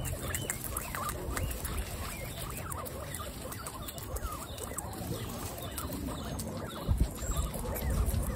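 Guinea pigs chewing tomato wedges: a steady run of quick wet munching and small clicks from several animals eating at once. A low thump comes near the end.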